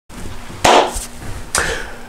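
Two sharp knocks about a second apart, over a faint steady hum.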